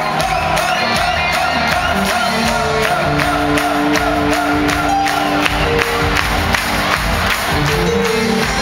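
A live band playing an upbeat rock song with a steady drum beat and sustained keyboard and vocal notes, over a large crowd cheering along in a big hall.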